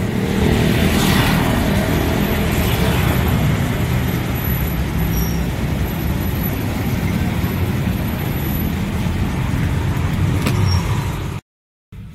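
Street traffic noise: steady motor-vehicle rumble, with a vehicle passing close by about a second in. It cuts off abruptly just before the end.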